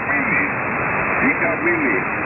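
Speech from an amateur-radio station received on an Icom IC-R71E receiver, heard through the set's audio over a steady background hiss.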